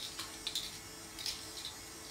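A few faint, short clicks and rustles from plastic clothes hangers and a knit garment being handled, over a faint steady hum.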